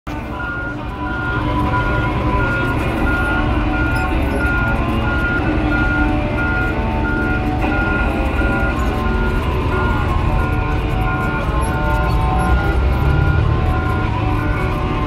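Motor grader's diesel engine running steadily, heard from inside the cab, with a high beep repeating about twice a second over it.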